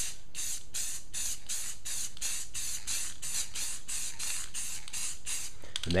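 Aerosol can of metallic silver spray paint sprayed in short hissing bursts, about three a second, misting a light coat onto the wood. The bursts stop just before the end.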